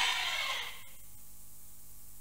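Quiet hall room tone with a steady low hum. A faint voice trails away in the first half second, and there is one soft click a little under a second in.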